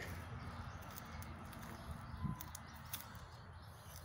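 Quiet outdoor backyard ambience: a faint steady hum and hiss, with a brief soft sound a little over two seconds in and a few faint ticks shortly after.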